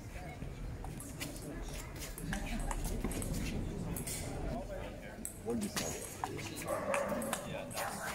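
Table tennis rally: the ball clicks sharply off the paddles and the concrete tabletop at an uneven pace. A dog barks a few short times in the background in the second half.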